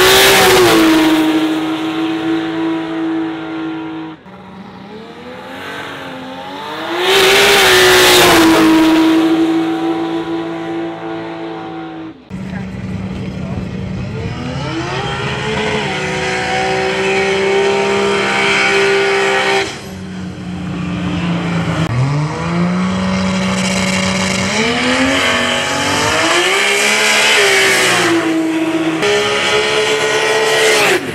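A Ford XB Falcon drag car's high-power V8 engine, around 1,500 hp at the tyres, revving up and holding steady high revs several times over in cut-together takes, including while its rear tyres spin in a smoky burnout. Each take rises in pitch and then settles on a held note, and the sound changes abruptly at each cut.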